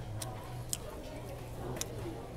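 Restaurant dining-room background: faint chatter over a steady low hum, broken by three sharp, short clicks spread through the two seconds.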